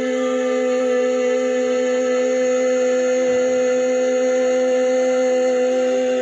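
A woman's voice chanting a mantra, holding one long, steady sung note.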